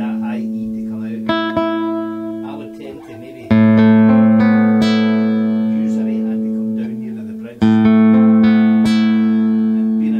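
Godin Multiac Nylon SA nylon-string electric guitar played fingerstyle. A chord is plucked about a second in, then two loud chords are struck about three and a half and seven and a half seconds in, each left ringing and slowly fading. The strings are plucked close to the bridge for a brighter tone.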